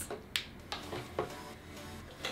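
A few light clicks and knocks, three in quick succession within about the first second, as a curling wand is set down and things are handled on a tabletop, over a faint low hum.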